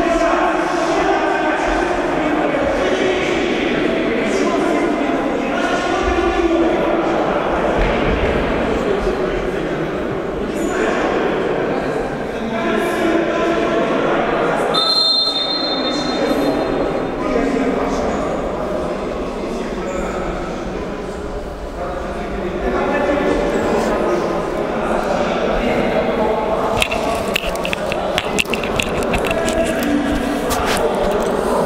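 Indistinct voices talking, echoing in a large indoor sports hall. A brief, steady high whistle tone sounds about halfway through, and a few sharp taps come near the end.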